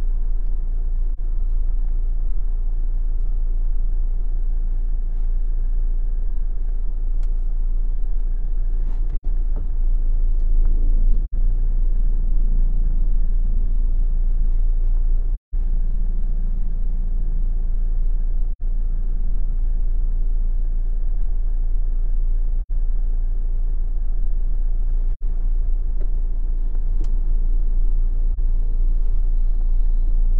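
Steady low rumble of a car moving slowly in stop-and-go traffic, heard from inside the car, with the sound dropping out for an instant several times.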